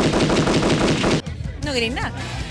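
A loud, dense rattle of very rapid clicks lasting just over a second, then cutting off suddenly, over steady background music; a voice follows near the end.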